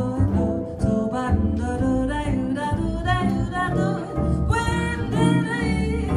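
Live jazz quartet playing: electric jazz guitar prominent over walking upright double bass, with vibraphone.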